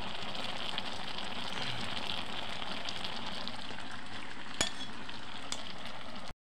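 Green beans bubbling and sizzling in a kadai over a wood fire: a steady hiss, with one sharp click a little past halfway.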